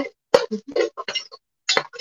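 Spoon clinking against a cooking pot while stirring cooked beans, a few short sharp clinks.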